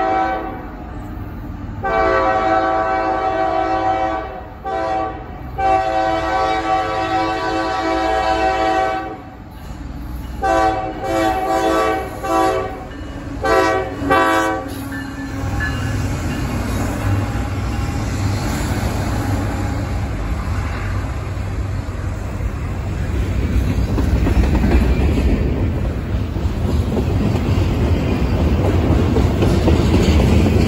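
CSX freight train's locomotive horn blowing a chord in several blasts, long ones first and then a few shorter ones, for about fifteen seconds. Then the diesel locomotive passes close by and covered hopper cars roll past with a steady rumble and wheel clatter that grows louder near the end.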